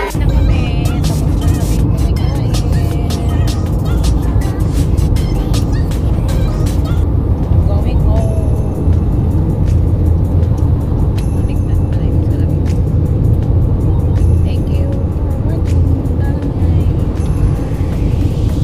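Loud, steady low rumble of road and engine noise inside a moving car, with frequent crackles and buffeting on the phone's microphone.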